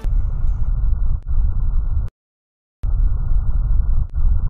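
Bowel sounds as heard through a stethoscope on the abdomen: a loud, low, muffled rumble. It cuts off suddenly a little after two seconds in and comes back under a second later.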